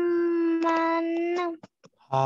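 A child's voice holding one long, steady vowel at an unchanging pitch, reciting a drawn-out letter name with the extended six-count madd of the Quran's disjointed letters. It stops about a second and a half in.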